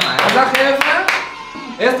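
A few people clapping by hand along with excited voices. The clapping stops just over a second in.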